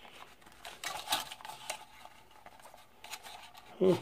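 Faint, scattered plastic clicks and scrapes as fingers work at a toy quadcopter's battery hatch, trying to pull out a battery that is stuck.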